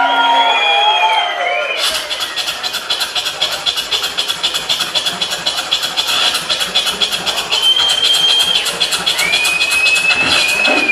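Live beatboxing through a microphone: a run of high whistle-like tones for about the first two seconds, then fast, dense percussive beats, with more high whistle-like tones over the beat near the end.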